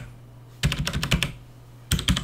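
Computer keyboard typing: a quick run of key clicks about half a second in, lasting under a second, then another run starting near the end.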